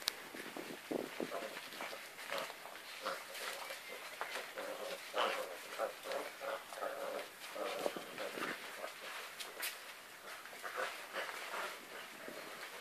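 A litter of puppies growling and squealing in short bursts as they play tug-of-war over towels, with a longer stretch of growling about five seconds in.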